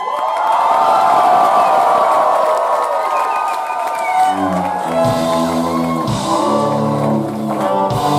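Live band music with crowd cheering: for the first half, high ringing held notes with no bass underneath, then the bass and the rest of the band come back in about four seconds in.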